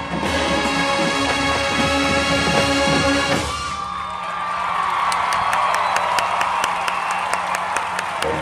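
Marching band brass and percussion playing the closing bars, ending on a held chord that cuts off about three and a half seconds in, followed by crowd cheering and applause.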